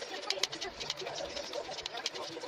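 Scissors snipping corrugated cardboard, several sharp cuts in quick succession. A dove coos in the background.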